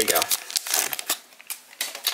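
Topps Chrome trading-card pack wrapper crinkling in the hands in irregular crackles as the pack is opened and the cards are taken out.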